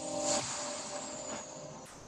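The closing of an electronic intro jingle: a held chord fading out under an airy whoosh that rises and then falls away.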